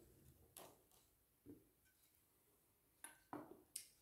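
Near silence with a few faint knocks and rustles: a glass bottle and a sheet stencil being handled on a worktable, three of the knocks close together near the end.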